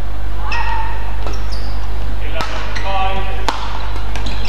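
Court shoes squeaking on a badminton court floor: several short, high squeaks. Two sharp knocks come later, all over a steady low hum.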